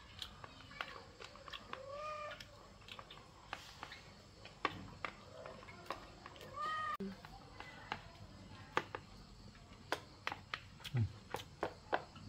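A cat meowing twice, about two seconds in and again near seven seconds, over scattered light clicks and taps of chopsticks against a plastic bowl during eating.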